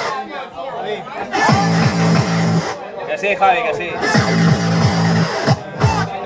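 Loud club music mixed live on vinyl turntables, its treble cutting out and coming back several times.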